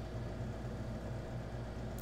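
Steady low hum with faint hiss: room tone.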